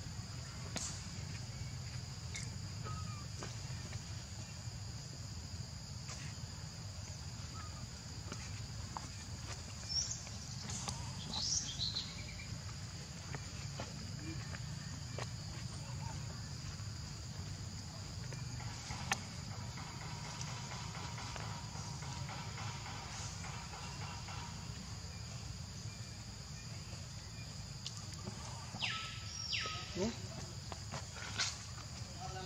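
Steady high-pitched insect drone, with a low background rumble. Short high calls break in about a third of the way in and again near the end.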